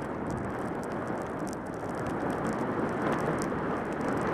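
Skis running over packed snow in a downhill glide: a steady rushing noise that grows slightly louder toward the end.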